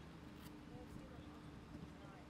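Faint, distant voices over low outdoor background noise, with a steady faint hum and a single light click about a quarter of the way in.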